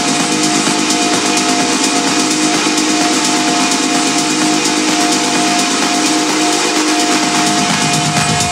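Electronic dance music in a breakdown, with the kick drum and bass cut out. Held synth tones sit over a bright, steady hissing noise layer.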